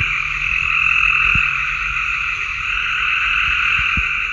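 A chorus of male gray tree frogs giving their trilled mating (advertisement) calls. Many overlapping trills merge into a loud, steady din.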